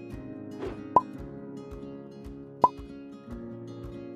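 Light guitar background music with two short, pitched plops, about a second in and again near three seconds in, each coming right after a brief swish, as pieces drop into the soup pot.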